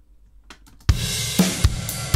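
A faint click, then about a second in a drum kit starts playing: kick and snare hits under a continuous ride cymbal. It is compressed with a short release time, so the ride surges up in the gaps between the kicks and snares: breathing or pumping.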